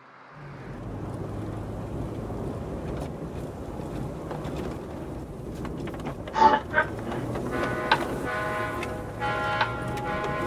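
Steady road and traffic noise fading in. A couple of sharp loud sounds come a little past the middle, then music with sustained instrumental notes begins near the end.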